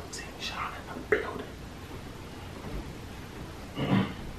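A person whispering briefly, with a sharp click about a second in.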